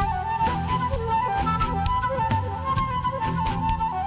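Instrumental break of a live folk-rock band: a flute plays a flowing melody over the band's backing of drums and guitars.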